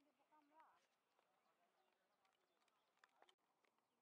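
Near silence, with faint voices in the first second and a few faint clicks about three seconds in.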